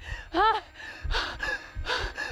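A woman gasping for breath in panic: one sharp, voiced gasp about half a second in, then quicker, shallower breaths. She is hyperventilating, burning through her suit's oxygen.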